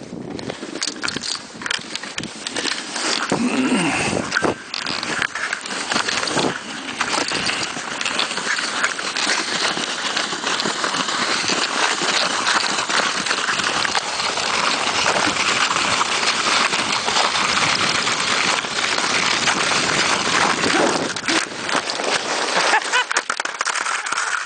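Wooden sledge running fast down a snowy slope: a steady rushing scrape of the runners over crusted snow, with scattered knocks from bumps, ending in a tumble near the end.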